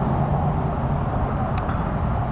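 A steady low outdoor rumble with a faint steady hum running under it, and a small click about one and a half seconds in.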